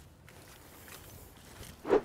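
Faint outdoor background noise, then near the end a single short, loud rushing sound.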